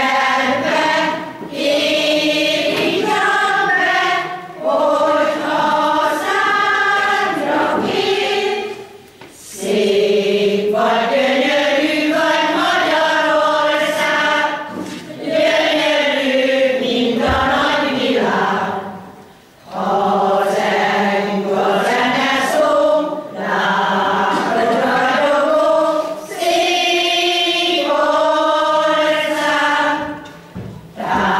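A mostly female amateur folk choir singing a Hungarian folk song unaccompanied, in long phrases with brief breaks for breath between them.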